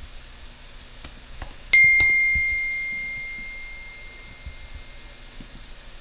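A single chime: one clear, high ding about a second and a half in that fades away slowly over about three seconds, with a few faint clicks around it.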